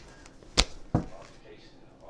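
Tarot cards handled on a tabletop: two sharp taps about a third of a second apart as cards are set down.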